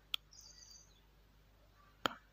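Near silence with a single keyboard keystroke click just after the start, followed by a faint, brief high-pitched chirp.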